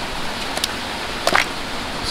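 Steady rush of running water from a nearby stream, with a single short handling sound about a second and a half in.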